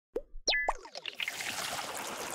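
Motion-graphics sound effects for an animated title card: a few quick rising pops in the first second, then a swelling hissy whoosh.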